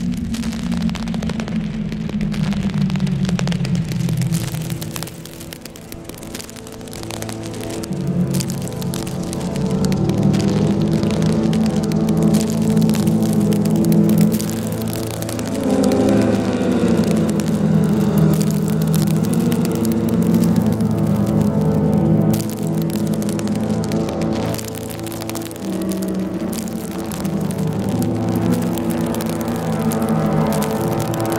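Live electronic music: layered, sustained pitched tones over a low drone, falling away briefly about five seconds in and then building back up.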